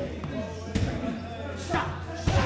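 Two sharp strikes landing on leather Thai pads about a second apart during close-range padwork, with voices and breathing around them.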